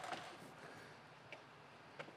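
Near silence: room tone, with a faint click a little past halfway and another at the very end.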